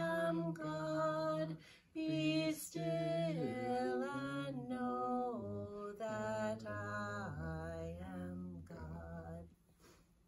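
A woman singing unaccompanied, in slow held notes that step from one pitch to the next, with a brief pause for breath near two seconds in. The song moves to lower notes and ends about half a second before the end.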